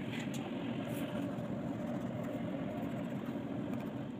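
A steady low hum and rumble of background noise, with no music or speech.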